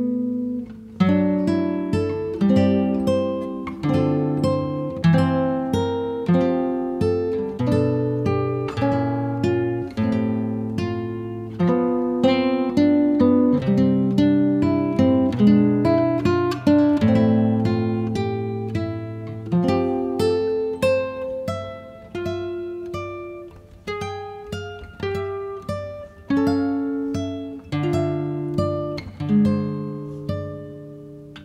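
Background music: solo acoustic guitar playing a melody of plucked notes, about two notes a second, each ringing and fading, without singing.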